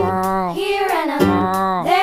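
Children's song: a voice singing long notes that swoop up and down in pitch over backing music.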